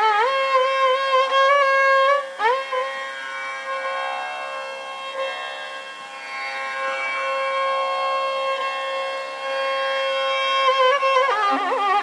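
Carnatic classical music in raga Pantuvarali: a single melodic line with gliding ornaments settles into one long, softer held note, then breaks back into ornamented phrases near the end.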